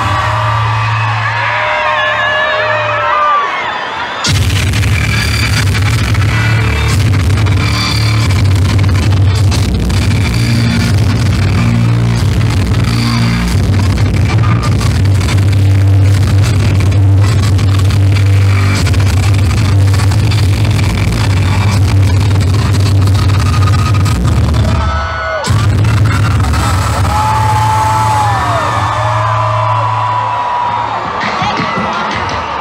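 Loud music over a concert PA system, with a heavy steady bass. The full music comes in suddenly about four seconds in and breaks off briefly near the end. High-pitched screaming from the crowd is heard at the start and again near the end.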